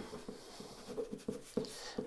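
Ballpoint pen writing in cursive on paper: faint scratching of the tip as a word is written out.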